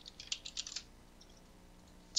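Typing on a computer keyboard: a quick burst of about a dozen light key clicks in the first second, then stopping.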